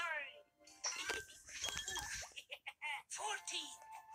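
Cartoon characters' voices calling out over children's background music, played from a television's speaker and picked up across a small room.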